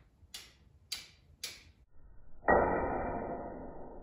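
Steel fire striker scraping against a small chert flake: three quick short scrapes, then a hard strike about halfway through that makes the steel ring with a metallic tone fading over a second or so.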